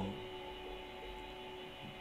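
Faint steady hum with a background hiss, unchanging through a pause in the speech.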